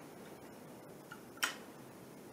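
A single sharp click from handling an FC-6S optical fibre cleaver, heard over quiet room tone.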